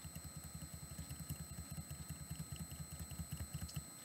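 Faint low pulsing of a small motor or engine running, about a dozen pulses a second, growing a little louder before it stops near the end.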